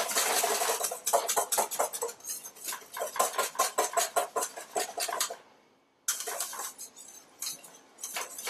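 Wire balloon whisk beating rapidly against the inside of a stainless steel mixing bowl, several clinking strokes a second, as egg-yolk sabayon thickens over a double boiler. The strokes stop for about half a second a little past halfway, then carry on more faintly.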